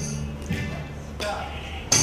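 Live band intro: low sustained keyboard notes with a couple of light percussive hits, then the full band comes in loudly just before the end.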